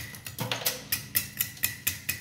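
A knife blade chipping at a block of clear ice, carving it down with quick strokes: sharp ticks about four a second as shards break off.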